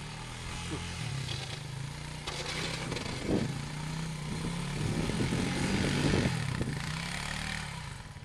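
ATV engine running under load as the quad pushes snow with a front plow blade; the engine note builds to its loudest about six seconds in, then eases off.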